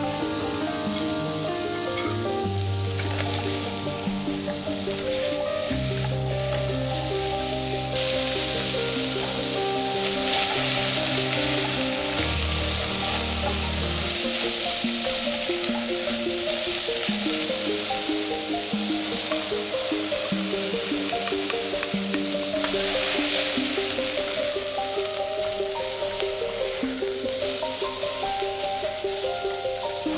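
Diced onion sizzling as it fries in a stainless steel saucepan and is stirred with a spatula. The sizzle is steady and swells louder twice, about a third of the way in and again past the middle. Soft background music plays under it.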